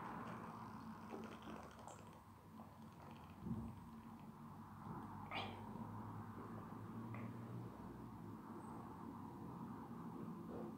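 A man drinking beer from a glass and swallowing, quietly, with a soft thump about three and a half seconds in and a short squeak-like throat sound about five and a half seconds in, over a low steady room hum.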